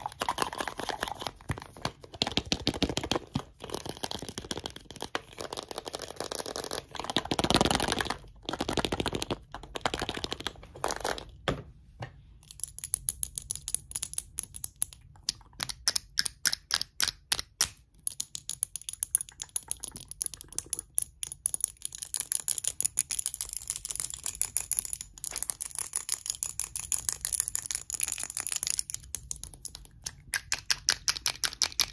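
Fingernails tapping and scratching fast and irregularly on small cosmetic containers: a white container with a louder stretch of scratching about seven seconds in, then from about twelve seconds quick taps on a small glass bottle with a gold metal cap, each tap with a light high ring.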